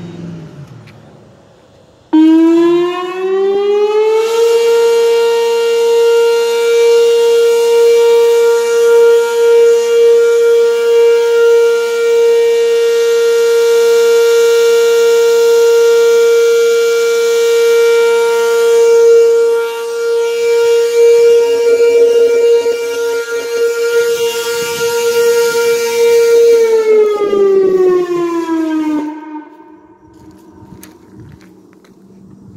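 Whelen WPS-2803 electronic outdoor warning siren sounding a steady-tone test. It starts abruptly about two seconds in and glides up in pitch for a couple of seconds. It then holds one loud, steady pitch for over twenty seconds and winds down near the end.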